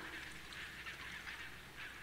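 A pause between spoken sentences: faint room tone of a lecture hall as the voice dies away, with no distinct sound.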